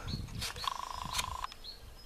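A short buzzing animal call, a rapid trill lasting about a second that starts about half a second in, over a faint low outdoor rumble.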